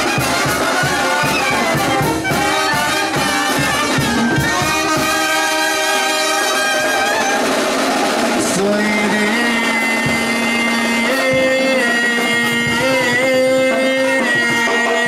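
A Mexican banda of trumpets, trombones, tuba and drums playing live. Busy and rhythmic at first, then from about nine seconds in the horns hold long sustained chords.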